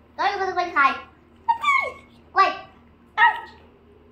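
A small child's voice making four short, high-pitched utterances, each falling in pitch, with the rhythm of speech but no clear words.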